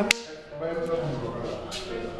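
A single sharp smack about a tenth of a second in, followed by low voices talking.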